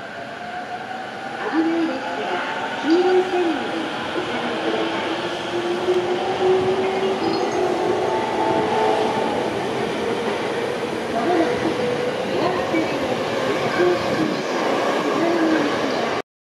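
Electric commuter train accelerating out of a station, its traction motors giving a whine that rises in pitch as it gathers speed, over steady wheel-on-rail running noise.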